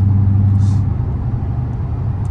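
Cabin sound of a Dodge Challenger Scat Pack's 392 (6.4-litre) HEMI V8 cruising at highway speed: a steady low engine drone over tyre and road rumble. About a second in, the drone drops away and leaves mostly road rumble.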